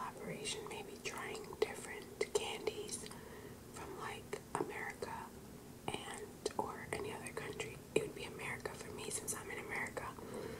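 A woman whispering close to the microphone, with many small sharp clicks between the words.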